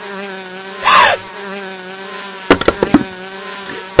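Steady, unbroken buzzing of a bee swarm, a cartoon sound effect. About a second in, a loud, sudden sound falls in pitch. At two and a half seconds a quick run of sharp knocks follows.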